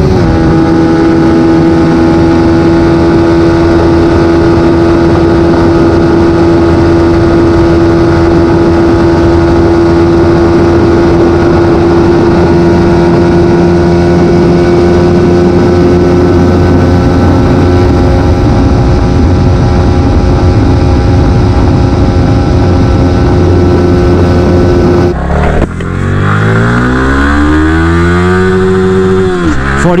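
Yamaha YZF-R125 single-cylinder engine held at high revs in top gear near its top speed: a loud, steady drone whose pitch barely changes, with a slight drop just after a shift into sixth at the start. About five seconds before the end it cuts to another small Yamaha sport bike accelerating hard, revs climbing fast, with a brief dip at a gear change near the end.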